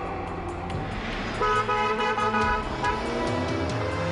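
Car horn honking in several short blasts lasting about a second and a half, over background music.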